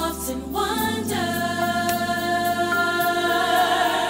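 Gospel song: a singing voice holds one long wavering note over sustained chords.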